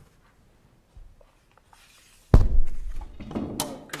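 Near silence, then about two seconds in a single heavy thunk close to a table microphone as something is set down or knocked against the table, followed by a few smaller knocks.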